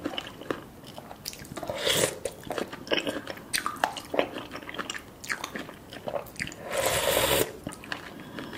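Close-miked chewing and wet mouth sounds of a person eating spicy seafood soft tofu stew with noodles, with many small clicks. Two louder, rushing sounds stand out: a short one about two seconds in and a longer one near the end.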